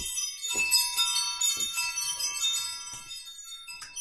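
Tinkling, bell-like chimes struck several times, their high tones ringing on and fading toward the end: a sparkly intro jingle.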